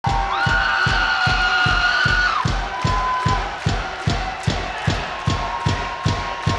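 Live punk rock band playing loud, with a fast steady drum beat of about three kick-drum strokes a second and a long held high note that stops about two and a half seconds in.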